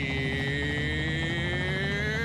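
A single held musical tone that slides slowly upward in pitch, over a low steady musical backing, as in a TV channel bumper or intro.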